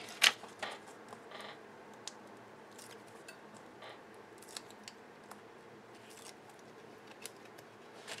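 Light paper rustling and small scattered clicks as a card cut-out is handled and adhesive foam pads are pressed onto its back, with one sharper click just after the start.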